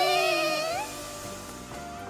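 A drawn-out, wavering cry that fades out within about a second, followed by soft background music.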